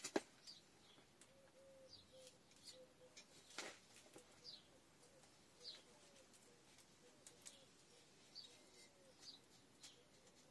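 Faint birdsong: short falling chirps repeating every second or so, over a faint run of lower repeated notes. A sharp knock comes right at the start, and another about three and a half seconds in, as potting soil is tamped with a wooden-handled tool.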